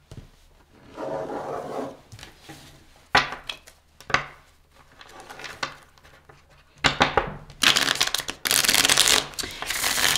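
A deck of tarot cards being handled and shuffled by hand: a few short bursts of cards sliding and tapping in the first half, then a louder run of quick shuffling lasting about three seconds near the end.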